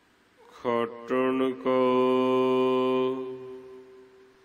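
A man's voice chanting a line of Gurbani from the Hukamnama in a slow, sung recitation: two short syllables, then one long held note that fades away.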